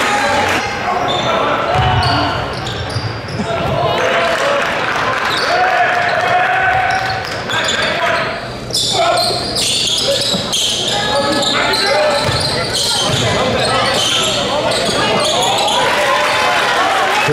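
Live game sound from a basketball gym: players and spectators talking and calling out, with a basketball bouncing on the court. The sound echoes in the large hall.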